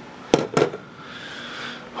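Two sharp knocks close together about a third of a second in, then a softer knock, followed by a low steady hiss.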